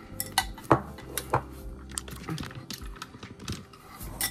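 A spoon clinking and scraping against a bowl and a glass mason jar in about a dozen irregular sharp clinks as leftover açaí smoothie is spooned into the jar.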